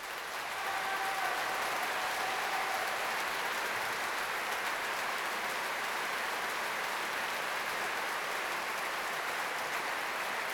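Large concert-hall audience breaking into applause: it swells up out of silence within the first second and then holds as a dense, steady clapping. A drawn-out shout from the crowd rises above it from about one to three seconds in.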